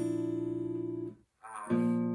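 Cort steel-string acoustic guitar with notes plucked from a fretted barre shape, ringing steadily. The ringing is cut off suddenly about a second in, and strings are plucked again shortly before the end.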